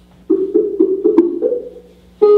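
Skype's outgoing call ringing tone playing through the computer's speakers: a quick run of about eight short plucked-sounding notes, the call to the Echo / Sound Test Service not yet answered.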